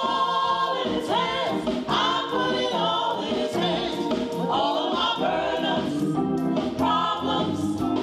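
A gospel vocal group of men and women singing together into microphones, in sung phrases with long held notes.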